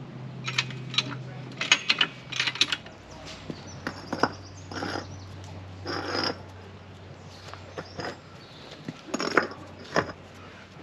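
Scattered short knocks, clicks and scrapes of hard objects being handled at a car's wheel, bunched in the first three seconds with a few more later, over a low steady hum.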